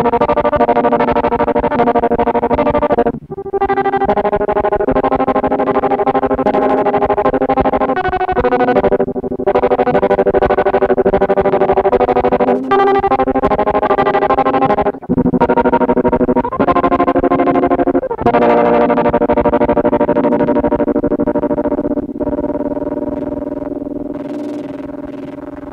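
Electric guitar played through a Snazzy FX Tracer City effects pedal: sustained, distorted, synth-like notes chopped into a fast, even pulse. The sound breaks off briefly several times and fades away near the end.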